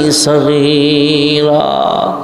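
A man chanting a prayer of supplication (munajat) in a slow, melodic line into microphones, holding one long note for over a second.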